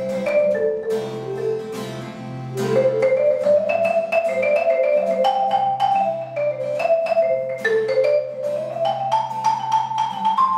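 Marimba and acoustic guitar playing an instrumental duet: quick runs of struck, ringing marimba notes over the guitar's picked chords and bass.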